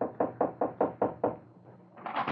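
Knocking on a door: a quick run of about seven evenly spaced raps, stopping about a second and a half in.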